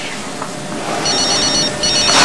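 Mobile phone ringing: a high electronic ringtone of rapid beeps that starts about a second in, breaks off briefly and starts again.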